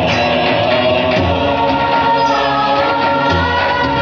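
Loud devotional jagran music: sustained, wavering sung lines over instrumental accompaniment, played loud and steady.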